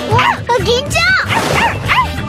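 An anime character's high-pitched voice crying out in about five short rising-and-falling yelps over background music.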